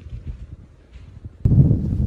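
Wind buffeting the microphone, a loud low rumble that starts abruptly about one and a half seconds in after faint outdoor background.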